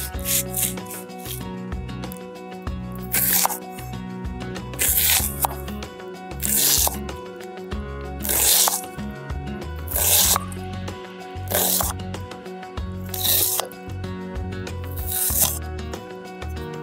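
Background music, with crisp strokes of a chef's knife cutting through red onion on a wooden cutting board.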